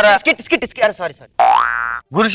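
A man's speech, then about a second and a half in, a comedy sound effect: a single upward-gliding, boing-like pitched tone lasting about half a second.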